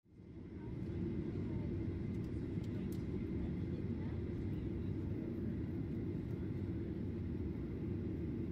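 Jet airliner cabin noise heard from a window seat: a steady, deep rumble of engines and airflow that fades in over the first second.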